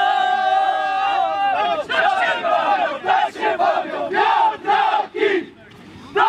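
A group of men shouting together in a celebration huddle: one long held shout, then a rhythmic chant of short shouts, about two or three a second, that breaks off near the end.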